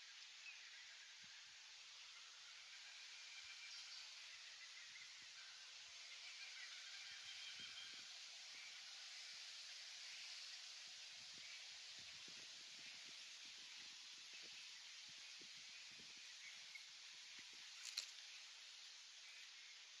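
Near silence: faint outdoor ambience with distant birds calling and light wind on the microphone, and one sharp click near the end.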